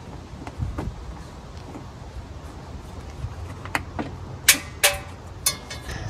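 Scattered metallic clicks and knocks from a wrench and hands working the lower power-steering bracket bolt and its stover lock nut free. The clicks come singly rather than as a ratchet's steady run, with the sharpest ones near the end, over a steady low rumble.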